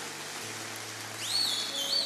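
Steady hiss with sustained low tones that drop in pitch about half a second in, and a thin high whistling tone that rises about a second in and then holds.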